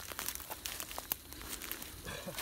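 Footsteps through dry grass, leaves and cut twigs, with irregular crackles and snaps of brittle vegetation.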